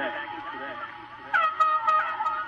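Murmur of voices, then about one and a half seconds in a loud held horn note starts suddenly, with a few sharp knocks over it.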